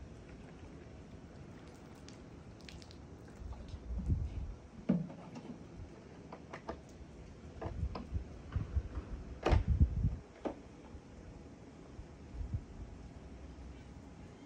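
Irregular soft thumps and a few sharp clicks and knocks, scattered from about three seconds in to about ten seconds in, over a faint steady background.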